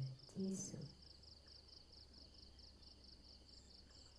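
Crickets chirping faintly and steadily in a fast, even pulse, behind a woman's voice that ends within the first second.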